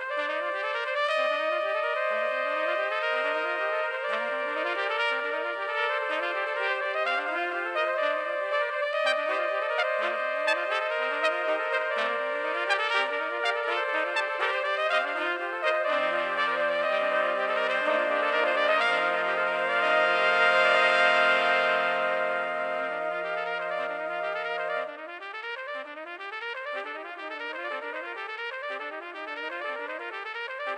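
An eight-part brass fanfare played on trumpets, all parts multitracked by one player. The upper parts run quick repeated figures while held lower notes come in about halfway through. The music builds to its loudest a little after that, then thins out and softens when the low parts stop near the end.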